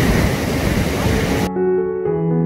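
Surf washing over a rocky shore, a steady roar that is cut off suddenly about one and a half seconds in by soft piano music.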